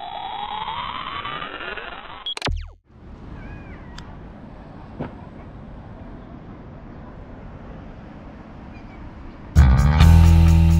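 An edited sound effect: a rising, pitch-sweeping riser that ends in a short hit about two and a half seconds in. Then a steady background hiss with a couple of faint clicks, until music cuts back in near the end.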